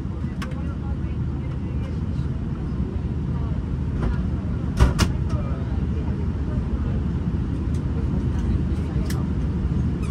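Steady low rumble of cabin noise inside an Airbus A320 as it moves off on the ground, with two sharp clicks in quick succession about five seconds in.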